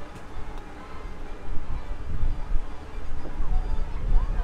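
Wind buffeting the microphone: a gusty low rumble that grows stronger about halfway through.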